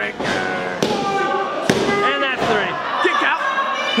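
Pin count in a wrestling ring: two sharp slaps on the ring mat about a second apart, the referee's count cut off before three by a kickout, with voices shouting over it.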